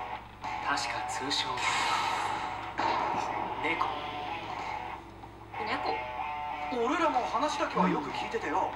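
Anime episode soundtrack: Japanese dialogue over background music, with a brief lull a little past the middle.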